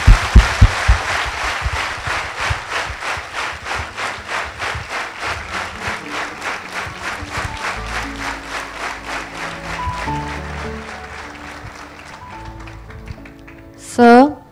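Audience applauding at the end of a talk, the clapping falling into an even beat of about four claps a second and fading away near the end. There are a few loud low thumps at the start. From about six seconds in, music with held, stepping notes plays under the clapping.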